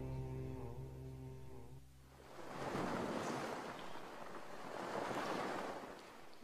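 The song's last held notes fade out over the first two seconds, then a soft rushing wash like ocean surf rises, swells twice and dies away.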